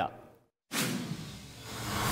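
News-bulletin transition sound effect: a sudden whoosh about two-thirds of a second in that fades away, then a second swoosh swelling near the end into the breaking-news sting.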